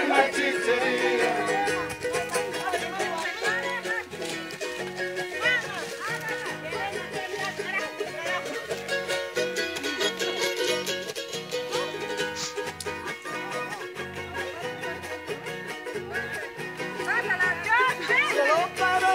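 A Bolivian carnival copla played live on a strummed guitar and other small, high-pitched strummed string instruments, in a fast steady rhythm. Voices sing over it, most strongly near the start and again near the end.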